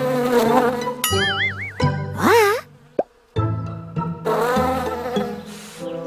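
Cartoon bee buzzing sound effect, a wavering drone heard twice, with a wobbling whistle and a quick rising swoop between the two buzzes.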